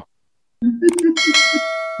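Notification-bell chime sound effect of a subscribe-button animation: a single ding about a second in that keeps ringing steadily, coming in just after a few spoken words.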